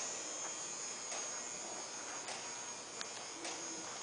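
A steady high-pitched electrical whine, with faint soft ticks about once a second.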